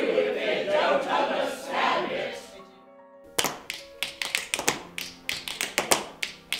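A group of voices chanting together in an actors' vocal warm-up, breaking off about two and a half seconds in. After a short lull, a quick run of sharp taps begins, about five a second, over sustained musical tones.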